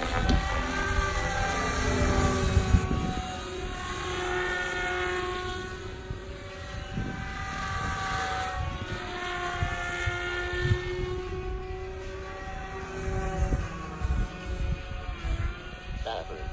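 SAB Goblin 500 Sport electric RC helicopter in flight: a steady whine from its motor and rotors that sweeps up and down in pitch every few seconds as it manoeuvres. An irregular low rumble sits underneath.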